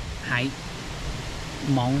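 A man's voice speaking briefly near the start and again near the end, reading out the trail name ('Hike… Monk's'). A steady hiss of background noise fills the gap between.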